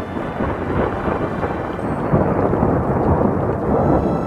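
Thunderstorm sound effect: rolling thunder over steady heavy rain, growing a little louder about halfway through.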